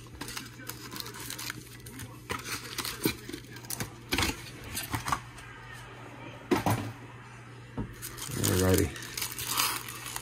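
Foil-wrapped trading card packs being pulled from a cardboard box and handled, with intermittent rustling and light taps as they are laid out and gathered up. A low steady hum runs underneath, and a short wordless voice sound comes about eight and a half seconds in.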